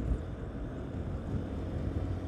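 Steady low rumble of a Yamaha Ténéré 250's single-cylinder engine under way, mixed with wind and road noise as picked up by the rider's camera.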